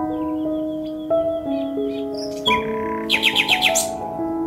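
Background music of sustained, overlapping notes, with birds chirping over it: light chirps in the first half, then a quick run of about eight sharp chirps near the end, the loudest sound here.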